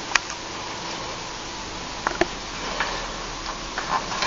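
A few soft clicks and taps from small hands handling the paper pages of a picture book, with a page starting to turn near the end, over quiet room noise.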